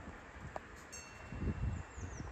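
A single bright metallic ring, like a chime struck once, about halfway through, its higher overtones dying quickly while the lowest tone lingers. Low wind buffeting on the microphone comes shortly after.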